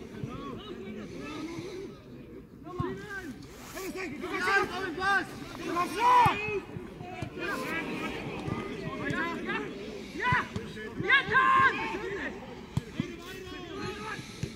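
Voices shouting and calling around a football pitch, with chatter in between and several loud shouts, the loudest about six seconds in and again around ten to eleven seconds.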